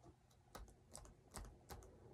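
Near silence broken by a few faint, light clicks and taps, about six of them scattered over two seconds.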